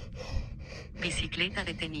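Fast, heavy breathing of a mountain-bike rider out of breath after a downhill run, with a voice starting to speak about a second in.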